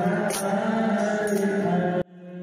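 Marawis ensemble: men singing a slow, drawn-out melody into microphones, with a few sharp hand-drum strikes about a second apart.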